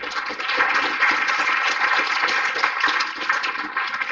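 Audience clapping, starting suddenly at the close of a talk and carrying on steadily.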